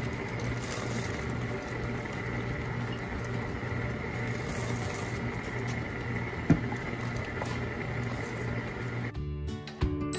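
Wooden spoon stirring chopped pecans into hot praline syrup in an aluminium pot, over a steady background hiss, with one sharp knock of the spoon against the pot about six and a half seconds in. Near the end the sound cuts off abruptly and music starts.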